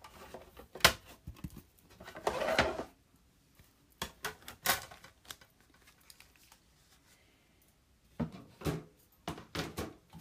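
Big Shot die-cutting machine being hand-cranked, the cutting plates on a magnetic platform rolling through the rollers with clicks and a short rough grinding stretch about two seconds in. Later come a few sharp clicks and taps as the plates are handled.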